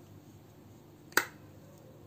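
A single sharp plastic click a little over a second in: a hinged plastic modak mould being snapped shut around its mawa filling.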